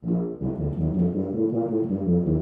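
Tuba playing a melodic étude passage as a warm-up: a run of short, separate notes moving up and down in pitch.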